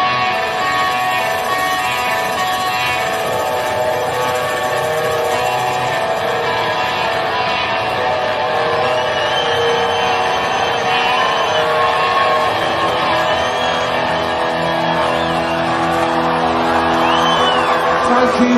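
Live rock band music led by electric guitar, with chords and notes held and ringing. Higher gliding notes come in from about halfway through, and low held notes join them a little later.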